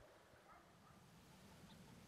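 Near silence: faint outdoor background hum with no clear sound event.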